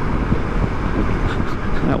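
Steady wind rush and road noise from riding a Honda GoldWing GL1500 touring motorcycle at highway speed, with the bike's engine running underneath.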